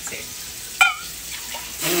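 Liquid jello mix being poured from a glass measuring cup into small plastic cups, a steady splashing trickle that spills over. A short high exclamation cuts in about a second in, and laughter starts near the end.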